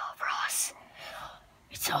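A child's whispered, breathy voice, starting suddenly, with a short hiss about half a second in; near the end the child speaks the words "It's over."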